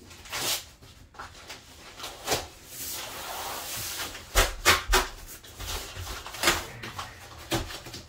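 A cardboard shipping box torn open by hand: cardboard and packing tape ripping, with a rough tearing stretch near the middle. Several sharp knocks and thumps from the box being handled on a hard floor, the loudest a quick cluster a little past halfway.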